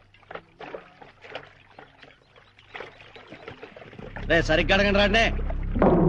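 Faint splashing and sloshing of pond water around someone wading with a pot, then a loud voice comes in about four seconds in.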